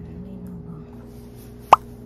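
A single short, sharp click-like knock about three-quarters of the way through, as the closed Lenovo Chromebook laptop is handled and lowered toward the desk, over a steady low hum.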